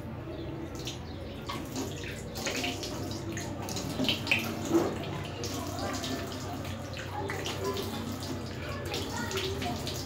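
Water running from a tap into a sink while hands scoop it up and splash it onto the face, with a few louder splashes about four to five seconds in.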